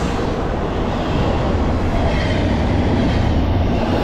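Double-stack intermodal freight cars passing close at about 49 mph, their wheels rumbling steadily on the rails.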